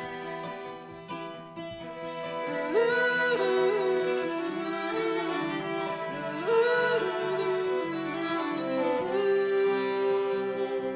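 Instrumental passage for kora and two violins: the kora plucks a repeating pattern while the violins bow sustained notes, sliding up into long held notes about three seconds in and again near seven seconds.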